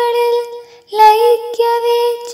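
Solo voice singing a Malayalam poem recitation (kavitha) in a high register. It holds one long, level note, breaks briefly for breath, then takes up another long held note about a second in.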